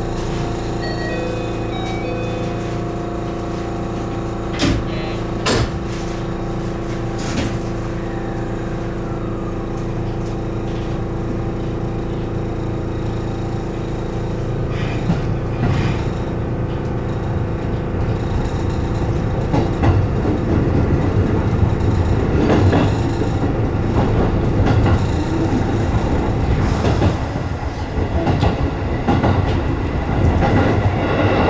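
JR West 207 series electric train heard from the driver's cab: a steady electrical hum while it stands, with a few sharp clicks about five seconds in. It then pulls away and gathers speed, and the rumble and clatter of wheels on rail grow louder through the second half.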